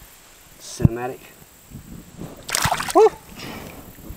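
A short splash in shallow creek water about two and a half seconds in, followed at once by a brief 'ooh'. A sharp knock comes about a second in.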